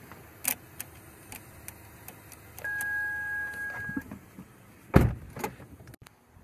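Apartment entry call box being used: a few light clicks, then a steady electronic beep held for about a second and a half. About five seconds in comes a loud clunk, followed by a couple of quieter knocks.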